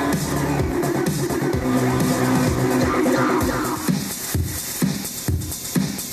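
Electronic dance music mixed live on a DJ controller. Full synth chords and bass run for about four seconds, then the track strips back to a kick drum beating about twice a second.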